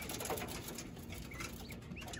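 Quail fluttering and scuffling on wire mesh, with a few faint short chirps.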